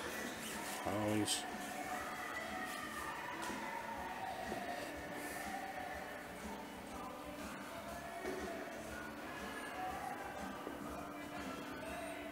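Background music playing over a public building's sound system, with indistinct voices in the room.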